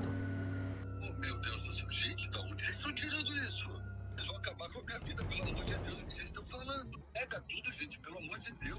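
Faint, indistinct speech in a low-quality audio recording, under a steady low hum, with faint music in the background.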